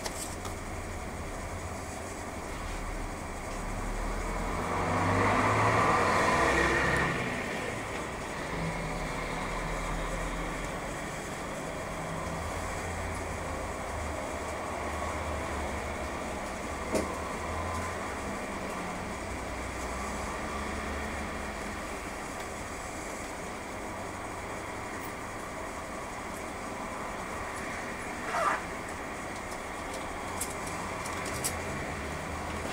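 Inside a 1992 Nissan Diesel U-UA440LSN city bus standing still, its diesel engine idling with a steady low rumble while traffic passes outside. A louder swell of sound lasts a few seconds about five seconds in. A sharp click comes around seventeen seconds and a short burst comes near the end.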